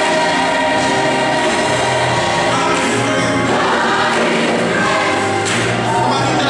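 Gospel choir singing in full harmony with held, sustained chords, accompanied by a band with keyboard and guitar.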